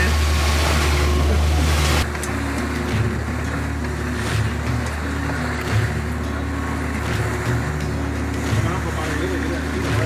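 Loud rush of wind and water over the low hum of a fishing boat's outboard engine running at speed, which cuts off suddenly about two seconds in. After the cut comes quieter background music with a slow beat over faint boat and sea noise.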